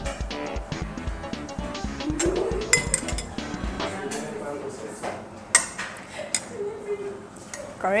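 A metal spoon clinking a few times against a stainless steel pot while seasoning is stirred into the broth.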